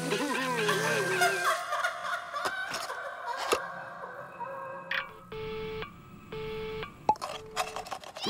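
Cartoon soundtrack: wordless cartoon-character yelling with wavering pitch at first, then music and sound effects, including three short buzzy tones in the second half.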